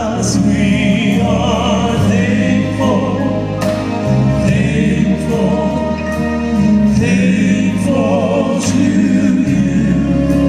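Male Southern gospel quartet singing in close harmony with vibrato over instrumental accompaniment, with a bass line and cymbal strokes.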